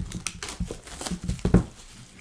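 Plastic shrink wrap crinkling and tearing as it is pulled off a trading card box, a rapid run of crackles with the loudest about one and a half seconds in.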